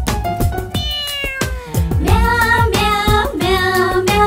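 Cartoon backing music with a steady drum beat, over which a cartoon kitten's voice meows: one long meow falling in pitch about a second in, then wavering meows in the second half.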